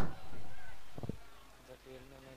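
A man's voice trailing off at the start. Then a faint, distant drawn-out call, held for under a second, about three-quarters of the way through.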